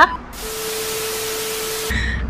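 A burst of static-like hiss with a single steady hum tone under it, lasting about a second and a half. It starts and stops abruptly, like a TV-static transition effect edited in between scenes.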